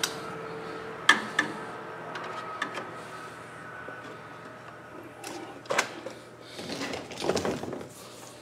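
Handling noise of electrical cable being fetched and worked: a couple of sharp clicks about a second in, more knocks around five to six seconds, and a rustle of cable near the end, over a steady room hum.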